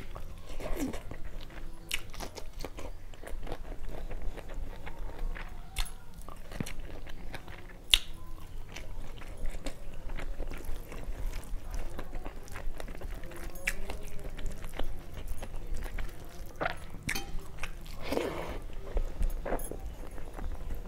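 A person chewing a mouthful of rice with prawn curry close to a clip-on microphone: wet chewing with many sharp lip-smacks and mouth clicks, and a brief louder mouth sound near the end.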